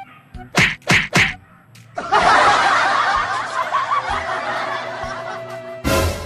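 Edited-in comedy sound effects: three quick hits in a row about half a second to a second in, then a burst of canned laughter from about two seconds in that slowly fades, ending in one sharp hit.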